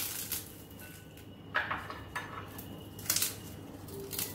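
Crisp fried papdi wafers snapping and crackling as they are broken by hand into a glass bowl. The crackles come in a few short bursts, about a second and a half apart.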